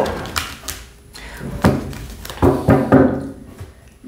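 Card decks handled on a tabletop: several soft knocks and taps as a cigano deck and a tarot deck are picked up, tapped and set down.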